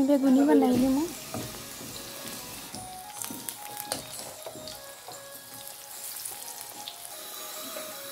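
Battered aubergine slices shallow-frying in hot oil in a pan, sizzling and crackling steadily, with a few scrapes and taps of a spatula as the slices are turned about midway. A singing voice in background music is heard for the first second, then drops away.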